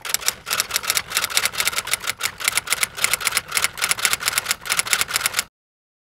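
Typing sound effect of rapid, irregular typewriter-style key clicks, set to text being typed out letter by letter on screen, stopping suddenly about five and a half seconds in.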